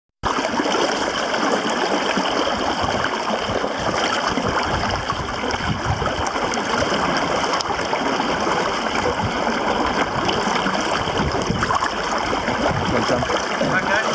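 Water sloshing and trickling inside a flooded car cabin as a rescuer moves through it, over a steady rush of water.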